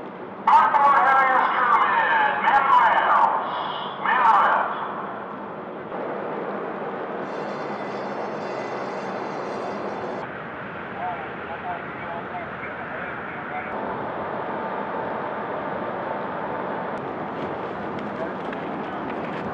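Loud wavering calls or shouted voices for the first four seconds or so, then a steady rushing background noise with a few faint distant voices.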